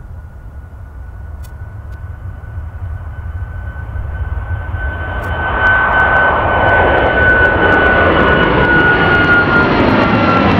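Twin-engine Boeing 737 MAX jet taking off at full thrust. The engine noise swells for the first five seconds or so as the plane lifts off and climbs past, then holds loud, with a steady high whine over the rumble that drops slightly in pitch near the end.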